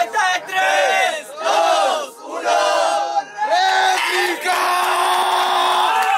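Crowd chanting and shouting in unison, in a string of short rising-and-falling shouts. About four and a half seconds in, they go into one long drawn-out shout.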